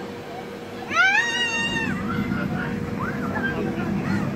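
A single long, high-pitched cry about a second in: it rises at the start, is held level for about a second, then drops away.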